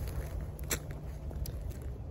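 Clothing rustling and a phone being handled as a person shifts position while sitting on the ground, with a few light clicks, the clearest about a second in. A low rumble of wind on the microphone runs underneath.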